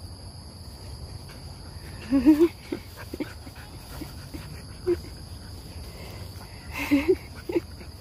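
A golden retriever and a white puppy play-wrestling, with short, wavering dog vocalizations about two seconds in and a couple more near seven seconds.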